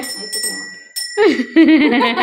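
Small puja hand bell rung repeatedly, its high ringing tones holding steady throughout. A woman's voice with a rising and falling pitch comes in over it in the second half.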